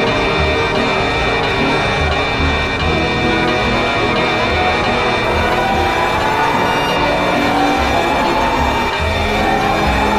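A loud, made-up emergency alert alarm: steady high alarm tones over a low pulsing throb, with a rising, siren-like wail that starts about halfway through and again near the end.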